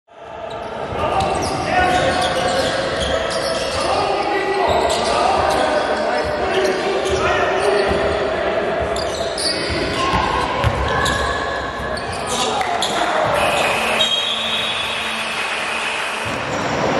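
Live game sound of a youth basketball match in a gym hall: the ball bouncing on the wooden floor, mixed with indistinct shouts from players and spectators echoing in the hall.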